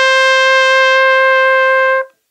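Solo trumpet holding one steady note that stops right at the end.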